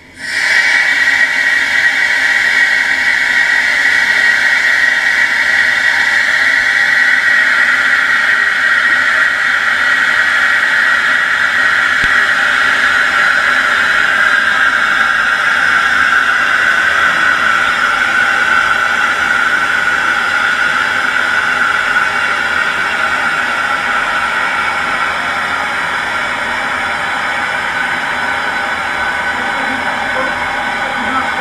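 Compressed air venting out of a hyperbaric chamber as the pressure is let down: a loud steady hiss that starts suddenly, its pitch sinking slowly. The falling pressure is fogging the air in the chamber.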